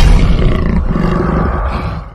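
A big cat's roar, loud and rough, dying away near the end.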